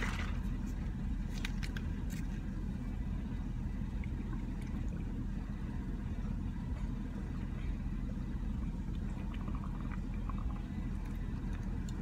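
Steady low road and engine rumble inside a car's cabin while driving, with a few faint clicks in the first couple of seconds.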